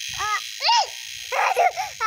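A young girl's short cries: an 'ah', then a sharp rising-and-falling yelp and a rough outburst about a second and a half in, as one of the insects she is handling bites her. A steady high-pitched whine runs underneath.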